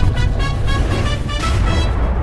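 Show intro music with a steady beat and deep bass, playing under the logo animation.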